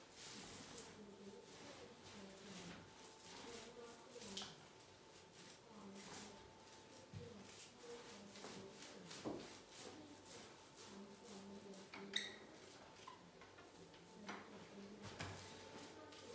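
Faint rolling of a paste-loaded paint roller on an extension pole over a plastered wall, with a few soft knocks of the roller frame.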